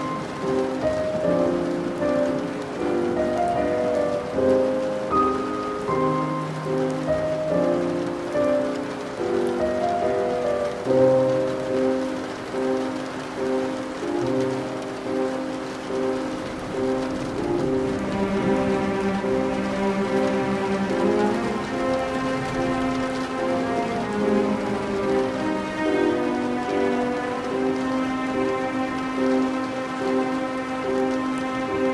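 Steady rain falling, with slow classical music of held melodic notes playing over it; the music grows fuller about halfway through.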